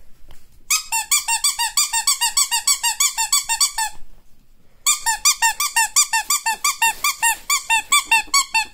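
Ferret dooking: a rapid, even series of high squeaky chirps, about ten a second, in two long runs with a short break about halfway.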